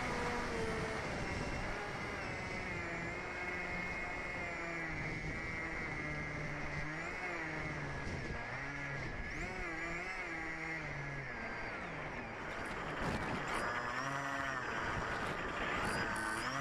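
A motor running, its pitch rising and falling over and over, over a steady hiss.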